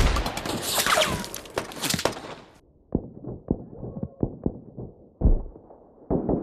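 Gunfire from a film's firefight: rapid loud shots for about the first two seconds, then the sound turns muffled and dull, with scattered thudding shots and one heavier thud near the end.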